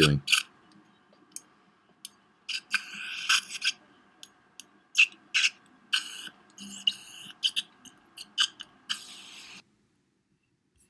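Lever-action PDL injection syringe clicking irregularly as anesthetic is pushed in slowly, with short hissing slurps from a saliva ejector over its faint steady hum. The sound cuts off suddenly near the end.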